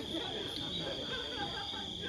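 Crickets chirring: a continuous, steady, high-pitched drone. Faint voices murmur beneath it.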